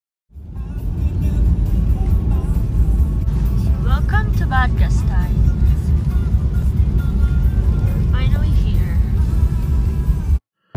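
Car driving on a wet road, heard from inside the cabin: a loud, steady low rumble of tyre and engine noise that starts suddenly just after the beginning. Short snatches of voice rise above it about four seconds in and again near eight seconds.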